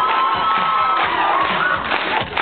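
A crowd cheering and shouting over music, with one voice holding a long shout in the first second.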